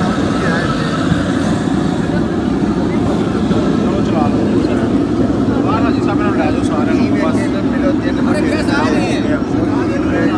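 Several men talking at once over a steady, loud low rushing noise that continues without break.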